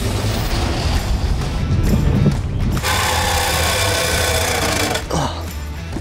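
Music over a Dodge minivan driving on a muddy dirt road, with a harsh mechanical grinding and rattling from about three seconds in that lasts roughly two seconds.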